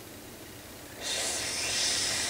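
A steady, high hiss for the Lego serpent, starting about a second in and still going at the end.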